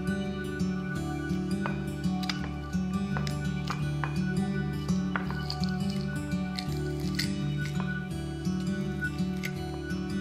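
Instrumental background music with a steady repeating pattern throughout. Under it, light clicks and a squish from a metal garlic press crushing garlic cloves over a glass bowl.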